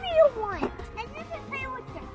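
A child's voice making a long falling vocal sound about half a second in, followed by a short held tone.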